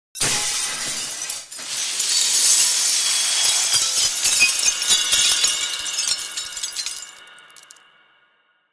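Glass-shattering sound effect: a crash, a short dip about a second and a half in, then a long spill of breaking and tinkling shards that fades into a ringing tail near the end.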